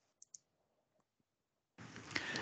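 Near silence with two faint computer-mouse clicks in quick succession, and a fainter third click about a second later.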